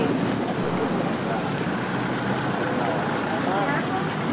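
Steady outdoor street noise, like traffic in the town, with faint distant voices now and then.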